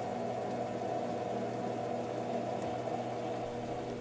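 Metal lathe running steadily in reverse with its change gears engaged for single-point threading, a constant motor and gear-train hum with a few steady tones.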